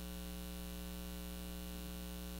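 Steady electrical mains hum, a low buzzing drone with a ladder of overtones above it, running unchanged through the pause.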